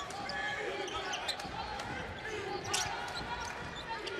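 Arena game sound during a basketball game: a basketball being dribbled on the hardwood court, with a few sharp knocks, over a steady crowd murmur.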